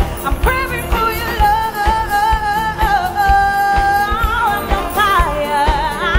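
Live band music: a woman singing a melody with vibrato over a steady drum beat and the band, holding one long note in the middle.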